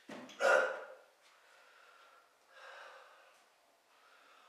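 A man breathing hard with effort while lifting dumbbells: a loud, sharp breath about half a second in and a softer one just before three seconds.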